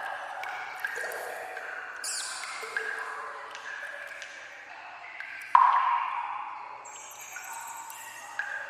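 Water dripping into pooled water in an echoing sewer tunnel: a string of overlapping plinks, each at its own pitch and ringing out briefly. The loudest drop comes about five and a half seconds in and rings for about a second.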